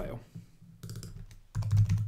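Typing on a computer keyboard: short bursts of keystrokes, a small cluster about a second in and the loudest near the end, as code is edited.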